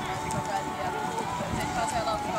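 Background voices talking, with faint hoofbeats of a horse cantering on an arena's sand footing.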